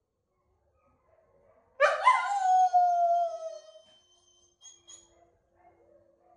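A Noble Shepherd wolfdog (grey wolf × German Shepherd hybrid) gives one quirky howl of about two seconds, starting a couple of seconds in: the pitch leaps up sharply, then slides slowly down before fading out.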